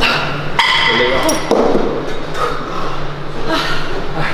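Cable machine weight stack clanking down about half a second in, with a metallic ring that fades over about a second. Short voice sounds come before and after it.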